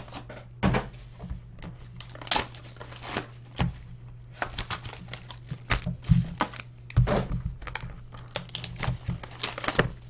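Trading-card pack wrappers crinkling and tearing as packs are opened, with cards being handled: a run of irregular rustles and sharp snaps, a few of them louder, over a steady low hum.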